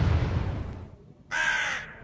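The fading tail of a loud boom, then a short, harsh, animal-like call about a second and a half in.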